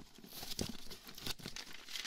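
Paper crinkling and rustling as it is handled and drawn out of a gift box, with a few faint crackles.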